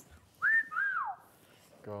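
A person whistling in amazement: a short rising note followed by a longer falling one, in the shape of a wolf whistle.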